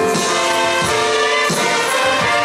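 A church orchestra of strings and brass playing a hymn, with voices singing along.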